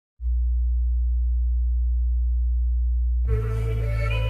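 Opening of a phonk track: a deep, steady electronic bass tone held for about three seconds. Just past three seconds the full track comes in, with layered synth tones over the bass.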